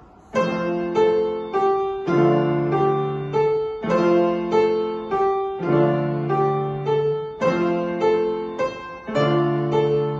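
Grand piano played four hands by a child and her teacher: a piece starts just after the beginning, with a steady pulse of notes, just under two a second, over held bass notes.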